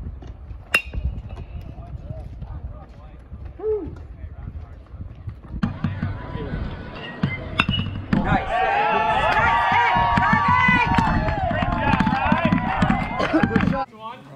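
Baseball bat hitting a pitched ball with a sharp crack about a second in, over a low rumble. Another bat crack comes about halfway through, followed by several people cheering and shouting over one another.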